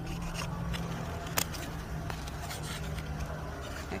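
Scissors cutting and scraping through an egg tray, with a few sharp clicks, the clearest about a second and a half in.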